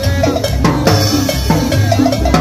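Live street band playing Latin dance music: congas and drum kit keep a steady beat under saxophone and other pitched instrument lines.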